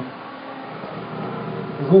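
A man's voice holding a steady, drawn-out hesitation sound, 'uh', between sentences.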